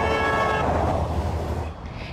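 Highway traffic passing close by, with tyre and engine rumble that fades near the end. A vehicle horn sounds once, briefly, at the start.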